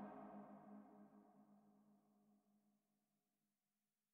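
The end of an electronic music track: its last sustained chord dies away, fading to near silence about a second and a half in, with a faint low tone lingering a little longer.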